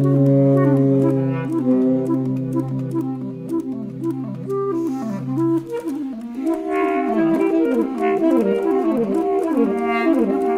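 Saxophone and clarinet duet. A low note is held for about six seconds while the other instrument plays a moving line above it. Then both play fast, repeating up-and-down figures.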